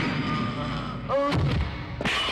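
A loud blast-like film sound effect: a long, noisy, slowly fading tail, then a second sharp hit about a second in with a short cry over it.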